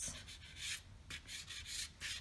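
A light blue chalk pastel stick rubbed across drawing paper in short side-to-side strokes: a faint scratchy rasp, repeating about three times a second.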